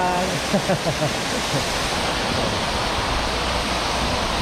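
Public fountain's water jets splashing steadily down into the basin, a constant rushing hiss. A few short voice sounds break in during the first second and a half.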